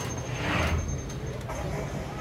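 Outdoor crowd ambience: faint voices of people nearby over a steady low hum, with a brief swell of noise about half a second in.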